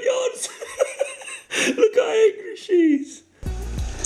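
A man laughing heartily in bursts. About three and a half seconds in, background music with a steady low beat starts.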